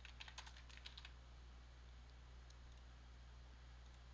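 Faint typing on a computer keyboard: a quick run of keystrokes in the first second, then near silence with a low steady hum.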